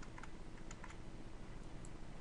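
A few faint, scattered computer clicks over steady low background noise and a faint hum.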